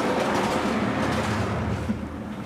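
Vertically sliding lecture-hall blackboard panels being pushed along their frame: a steady rolling rumble, with a short knock near the end as a panel comes to a stop.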